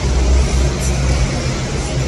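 A car engine idling, a steady low rumble.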